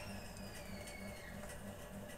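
Quiet room tone: a low, softly pulsing hum, with a faint high whistle that glides slightly downward over the first second and a half.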